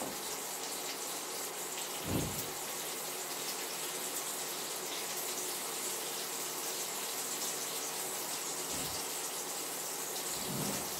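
Meatballs frying in a tablespoon of oil in a pan, a steady sizzle as their outsides sear. A dull thump comes about two seconds in and another near the end.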